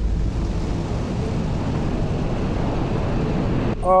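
Pressure washer's rotating turbo nozzle spraying: a steady rushing noise with a low rumble underneath.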